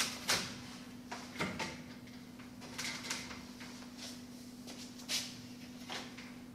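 Guide rails of a vertical roller mosquito screen knocking and clicking as they are handled and slotted into the seat under the screen's cassette: a scattered series of light knocks, the loudest about five seconds in, over a steady low hum.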